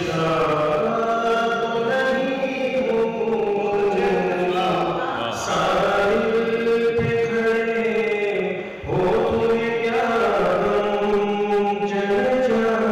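A man's voice reciting Urdu poetry in a sung, melodic style (tarannum) into a microphone. He holds long notes that slide slowly in pitch, with short breaks between phrases about halfway through and again near the ninth second.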